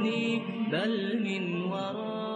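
Background vocal music: a chanting voice holding long notes, sliding up in pitch about a second in, and slowly getting quieter.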